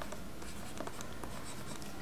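Stylus writing on a tablet surface: light, quick scratches and small taps as handwritten characters are drawn, over a faint low hum.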